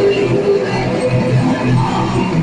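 Live band playing loud amplified music, with electric guitar and bass carrying sustained low notes.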